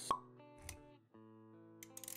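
Intro music for an animated title sequence, with a sharp pop sound effect just after the start and a soft thud about half a second later, then a held, gentle chord.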